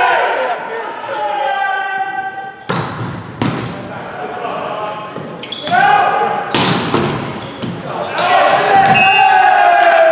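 Volleyball rally in a gymnasium: four sharp hits of the ball, from about three seconds in, with players calling and shouting around them, echoing in the large hall.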